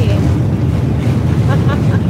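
Passenger ferry's engines running with a steady low drone, mixed with wind buffeting the microphone on the open deck. The speaker calls it noisy.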